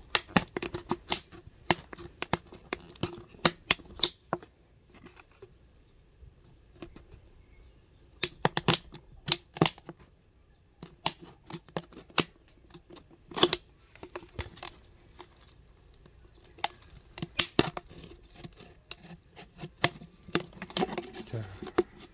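Thin plastic PET bottle being pierced and cut with a utility knife: sharp, irregular clicks and crackles of the plastic, coming in bunches with quieter gaps between.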